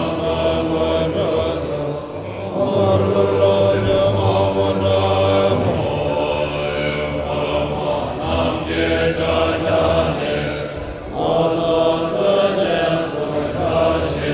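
Tibetan Buddhist monks chanting in low male voices, amplified through a microphone. The chant runs in long held phrases broken by short pauses every four or five seconds.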